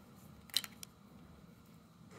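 A sharp click about half a second in, followed by a fainter one, as a jeweler's Phillips screwdriver works a small screw in the drone's plastic landing-gear leg, over a faint steady hum.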